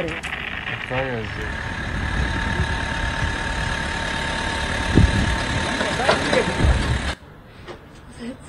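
Loud, steady rumbling noise with a thin steady whine and brief voice fragments. Two deep thuds come about five and nearly seven seconds in, and it cuts off suddenly near the end. It is presented as the sound of an explosion in a residential building, recorded from another building.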